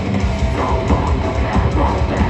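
Live heavy metal band playing loud: distorted electric guitar, bass guitar and a pounding drum kit.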